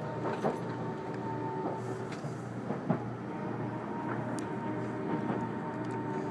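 Cabin noise of a JR Central 373 series electric train running along: a steady rumble with a faint whine that fades out about two seconds in, and a couple of light clicks.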